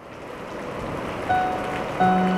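Typhoon wind and heavy rain, a steady rushing noise that fades in from silence and grows louder. A soft sustained music note enters over it a little past halfway.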